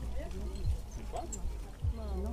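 Indistinct voices of people talking in the background, too faint to make out words, over a steady low rumble.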